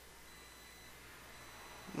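Faint steady hiss of room tone and microphone noise, with no distinct sound events.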